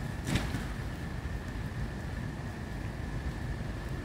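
Steady low outdoor rumble with a faint, steady high-pitched tone running through it, and one brief sharp noise about a third of a second in.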